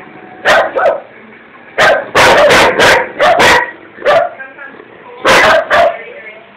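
German Shepherd dog growling and barking close up, in about a dozen short, harsh, loud bursts that come in quick clusters with brief pauses between. It is a hostile, aggressive display.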